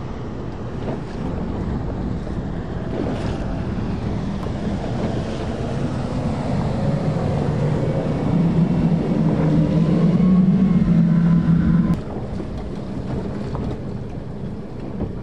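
Wind buffeting the microphone over rushing water from a boat moving at speed. A low steady hum grows louder from about eight seconds in and cuts off suddenly at about twelve seconds.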